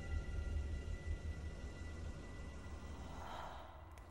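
A soft, breathy sigh about three seconds in, over a low rumble that slowly fades.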